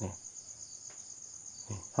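Crickets chirping in a steady, high-pitched, evenly pulsing trill.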